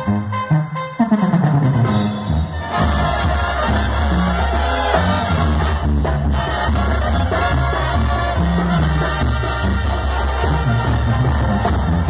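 Live Mexican banda brass band playing, with trombones and trumpets over a deep bass line. A falling run in the low brass comes about a second in, and the full band enters with heavy bass near three seconds in.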